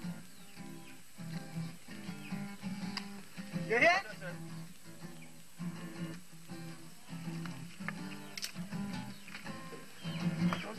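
Acoustic guitar being plucked, a repeating pattern of short notes over a steady low note, with a brief call from a man about four seconds in.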